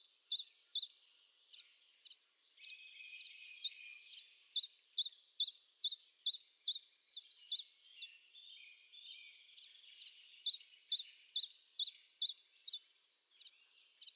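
Common chiffchaff singing: runs of short, high notes at about two to three a second, in several bursts separated by brief pauses.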